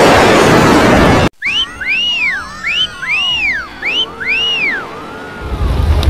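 Heavily distorted, effects-processed edit-bot audio: a loud harsh noisy stretch that cuts off suddenly about a second in, then about six whistle-like sweeps that each rise and fall in pitch, and a low rumble building near the end.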